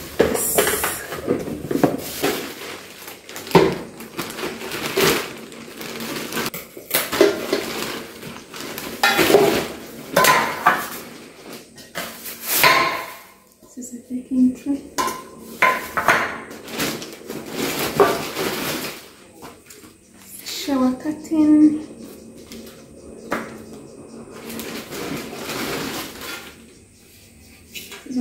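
Bakeware and plastic kitchen gadget parts being handled during unboxing. There is irregular clattering and knocking of a metal muffin tin and loaf pan and the clear plastic pieces of a vegetable shredder, mixed with rustling of packaging.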